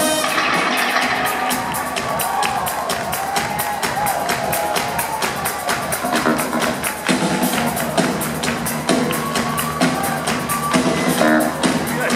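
Live funk band playing amplified music: a drum kit keeping a steady beat under electric guitar.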